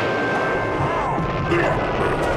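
Film soundtrack: a dense, noisy crashing sound effect over music with a few held tones.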